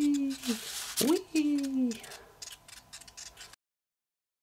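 A man's voice making two swooping vocal sound effects, each rising then falling in pitch, over light clicks and taps of a folded paper model spinning on a tabletop. The sound cuts off abruptly about three and a half seconds in.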